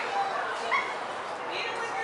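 Spectators chattering in the stands, with two short high-pitched yelps or calls cutting through, one a little under a second in and one near the end.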